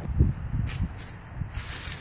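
Rustling and short hissy bursts, with a low thump just after the start.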